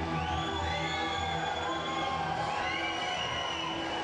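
Fighter's walk-out music playing over a cheering crowd in the hall, with high rising whoops near the start and about two and a half seconds in.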